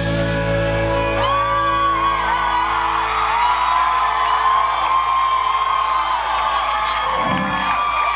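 A live rock band's final chord ringing out and fading after the song ends, with the audience whooping and cheering in long held calls.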